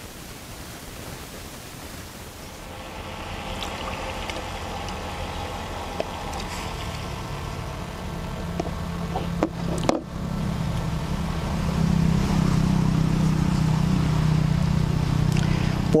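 A steady low engine-like drone that swells and grows louder over the second half, with a few light metallic clicks near the middle.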